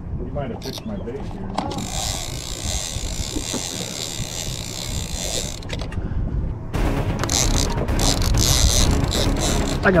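Shimano TLD 2 Speed 20 lever-drag reel's drag buzzing as a hooked fish pulls line off the spool: a steady high buzz for a few seconds, then a second, louder run from about seven seconds in.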